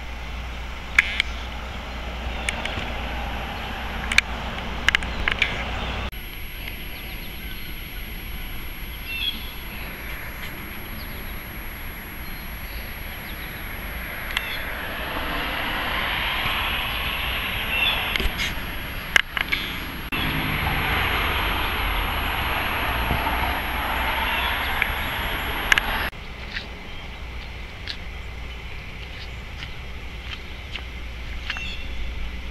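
Outdoor background noise: a steady low rumble, as of wind on the microphone, with a hiss that swells in the middle and a few sharp clicks along the way.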